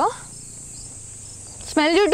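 Insects in the forest keeping up a steady, high-pitched drone. A woman's voice starts speaking again near the end.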